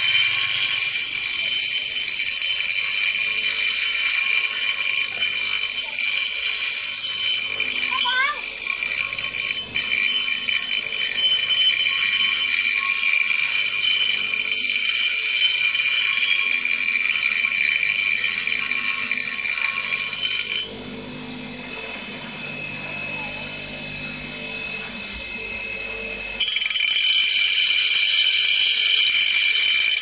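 Bench grinder wheel grinding a steel rubber-tapping knife blade to shape it, with a steady high-pitched grinding whine. The grinding stops for about six seconds past the middle, leaving only the quieter running of the grinder, then starts again near the end.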